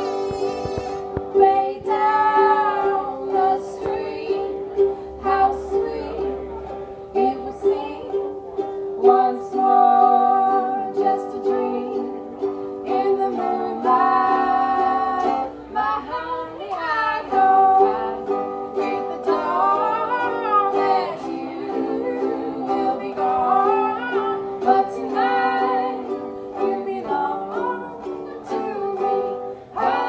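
Two women singing together in harmony to two ukuleles, one a small soprano ukulele and one a larger ukulele, played live through a PA in a small room.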